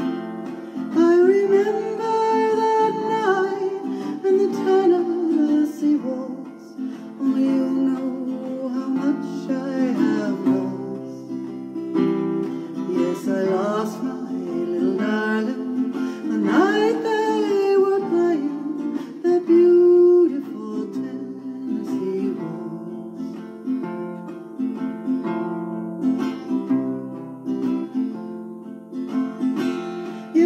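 Acoustic guitar strumming a slow country waltz accompaniment, with a woman's voice singing over it, drenched in heavy reverb.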